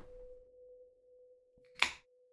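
A steady pure tone holds at one pitch throughout. Near the end an aluminium drink can is cracked open: a small click, then a short, sharp pop and hiss.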